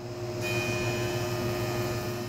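Woodworking jointer running with a steady hum, its cutterhead starting to plane a curved piece of wood about half a second in, adding a steady hiss.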